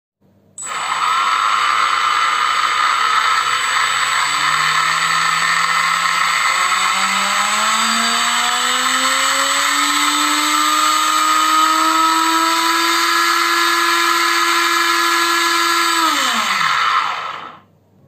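Small 2200 KV brushless outrunner motor spinning up under electronic drive, its whine climbing in pitch over about ten seconds and then holding at a steady top speed with a fixed high tone above it. Near the end it cuts power and spins down, the pitch falling away.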